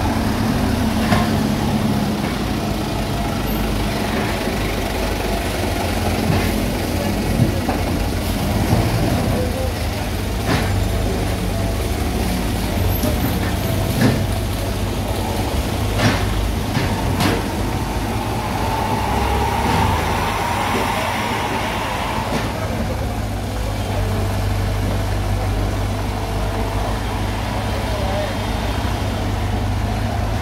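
Komatsu PC75 hydraulic excavator's diesel engine running steadily while it digs and loads soil and broken rubble, with sharp clunks of rubble and the bucket knocking against the steel dump bed, about seven of them spread through the first half.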